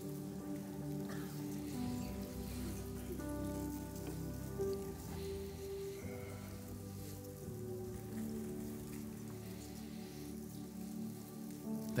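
Soft worship keyboard playing sustained chords that change slowly every few seconds, over a faint hiss.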